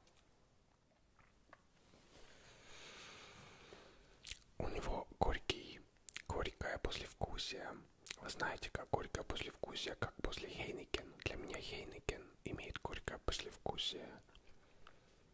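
Close-miked ASMR whispering, thick with wet mouth clicks and lip smacks after a sip of beer. A long breathy exhale comes first, about two seconds in.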